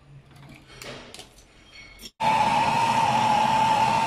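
A few faint handling clicks, then, about halfway in, a hand-held gas torch starts burning on a copper refrigeration tube. It is a loud steady hiss with a high, even whistling tone.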